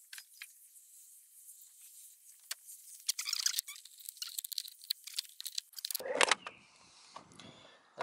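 Light plastic clicks, creaks and rattles as the painted cap of a Ford Fiesta ST wing mirror is prised off its clips. The clicks come thickest in the middle, with a louder burst near the end.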